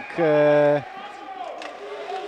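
A man's voice holding one drawn-out syllable for about half a second, then faint ice-rink background noise.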